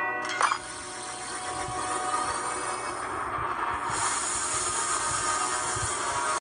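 Animated-film soundtrack: music under a steady rushing sound effect, which begins with a sudden sharp hit about half a second in.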